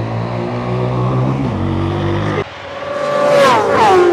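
Racing motorcycle passing at speed: a loud, high engine note that drops sharply in pitch as it goes by, about three and a half seconds in. Before it, a steadier, lower engine drone cuts off abruptly about two and a half seconds in.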